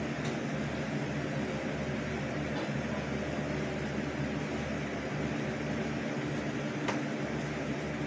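Steady low mechanical hum of a running room appliance, with two faint clicks, one just after the start and one near the end.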